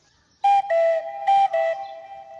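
A short whistle-like tune starting about half a second in: a few clear notes stepping back and forth between two pitches, some opening with a breathy puff, the last note held.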